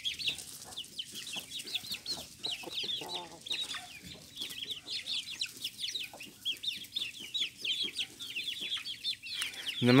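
Chicks peeping constantly: many short, high cheeps a second, each falling in pitch. About three seconds in comes a brief, lower chicken call.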